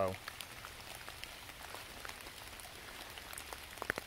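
Rain falling on wet leaf litter, with a small woodland stream trickling over leaves and sticks: a soft, even hiss with scattered faint drip ticks.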